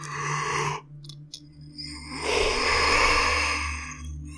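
A man breathing close to the microphone: a short breath, then about a second later a long sigh out, over a low steady hum in the background.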